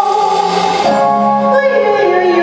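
Woman singing live into a microphone with musical accompaniment, holding long notes; the melody moves to new notes about a second in.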